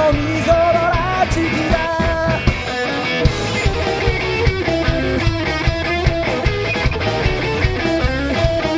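Rock band playing live: electric guitar, electric bass and drum kit, with a melodic line over a steady driving beat.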